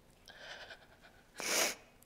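A woman's quick, audible breath in close to the microphone, about one and a half seconds in, after fainter breath noise.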